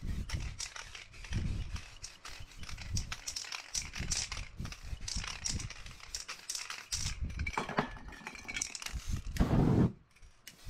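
Aerosol spray paint can in use: short bursts of spraying hiss mixed with knocks and rattles from handling the can, ending in a longer, louder spray about nine seconds in.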